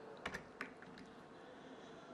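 Sharp clicks at a computer: a quick cluster about a quarter second in, another click just past half a second, then a few fainter ticks, over faint room hiss.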